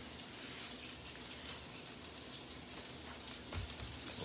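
Salmon fillet searing in hot olive oil in a pan, a steady sizzle; a soft low knock near the end.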